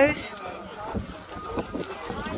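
Dry brushwood burning with faint crackles as it catches fire in a hot volcanic vent.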